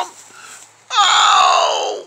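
A loud scream from a man starting about a second in, falling steadily in pitch for about a second.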